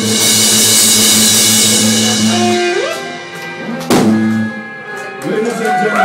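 Live blues band of electric guitar, lap steel guitar, pipa and drums playing a song's close: the full band with cymbals drops away about two and a half seconds in, a single accented final hit comes about four seconds in with a low note held briefly, and voices come up near the end.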